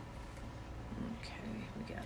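A woman's voice speaking very quietly, almost whispered, with the words unclear, in the second half, over a steady low hum.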